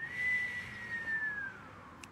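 A woman whistling through pursed lips to imitate the wind: one long note, held and then slowly gliding down in pitch before fading out.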